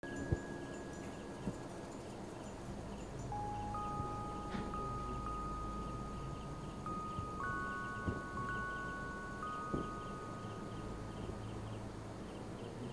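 Eerie ambient score: thin, chime-like tones enter one after another and hold, layered over a low hum and a faint, quick, repeated high chirping. A few soft knocks fall near the start and about eight and ten seconds in.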